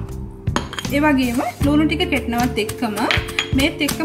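Stone pestle knocking and scraping against a stone mortar as chopped onion is pounded into coconut sambol, a run of sharp clicks and knocks. Background music with singing plays throughout.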